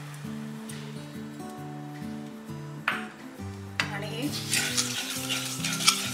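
Spatula stirring sugar and water in a metal kadhai: a few sharp knocks in the first seconds, then a gritty scraping that starts about four seconds in and gets busier near the end. Background music runs underneath, a slow tune of held low notes.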